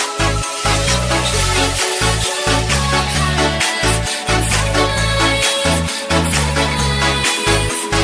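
Electronic dance music with a steady, repeating bass beat.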